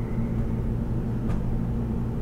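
Steady low hum of room background noise, with one faint click a little past a second in.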